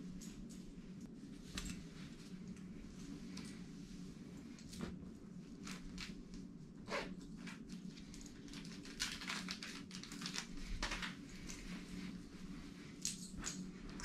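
Faint rustling and scattered light clicks of clothing and objects being handled, over a steady low hum of the room.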